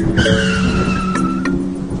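Opening music of a show with a sound effect laid over it: a high, slightly falling squeal lasting about a second, above a steady low drone.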